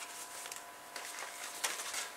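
Faint handling noise of black card and sticky tape being pressed and moved on a cutting mat, with a few light taps and rustles.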